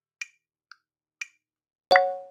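Metronome clicking about twice a second, the first and third clicks brighter and the middle one weaker. Near the end comes one loud struck ding that rings out and fades within half a second.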